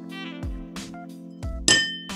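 A metal teaspoon strikes a porcelain bowl once near the end, a sharp clink that rings briefly, over background music with a steady beat.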